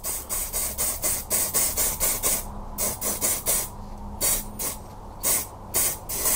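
Aerosol spray can of miniature primer being sprayed in a series of hissing bursts, short and rapid at first, then longer bursts with brief gaps.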